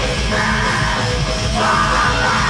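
Black metal band playing live at full volume, distorted guitars under harsh screamed vocals that come in twice, shortly after the start and again near the end.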